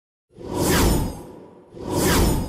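Two swelling whoosh sound effects of a TV graphics transition: one about a third of a second in, the second starting near the end.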